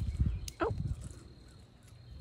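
A squirrel lands on a person's outstretched hand, giving a cluster of low thumps and a sharp click in the first half second. A short surprised human 'Oh!' follows.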